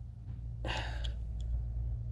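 A person's short breath out, a sigh, a little over half a second in, followed by a couple of faint clicks, over a steady low hum.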